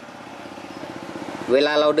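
A small engine running in the background with a rapid, even pulse, growing steadily louder, then a man's voice near the end.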